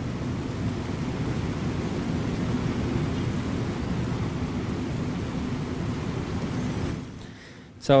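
Steady low rumbling background noise with a faint hum, cutting off suddenly about seven seconds in.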